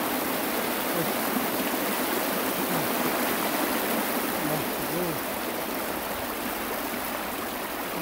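Steady rush of flowing hot-spring water, with faint voices of people in the background.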